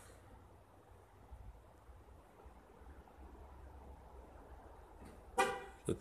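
Faint low rumble of traffic, then a short car horn toot about five seconds in.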